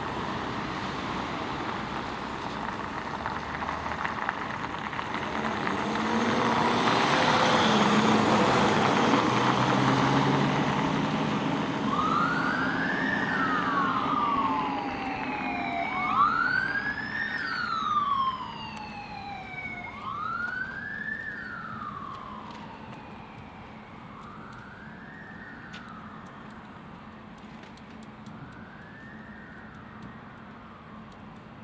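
Mercedes-Benz Sprinter fire and rescue van pulling out and driving past, its engine and tyres loudest about eight seconds in. About twelve seconds in its siren starts a slow wail, rising and falling roughly every four seconds and growing fainter as the van drives away.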